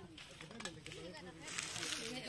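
People talking quietly in the background, with a brief burst of rustling noise near the end.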